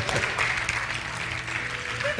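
Congregation applauding: a dense patter of hand claps over a soft, steady sustained music tone.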